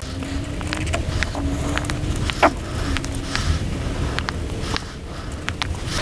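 Felt-tip marker tracing around a paper template on a small wood carving blank, with scattered small clicks and taps as the block and paper are handled and a sharper tick about two and a half seconds in. A steady low rumble runs underneath.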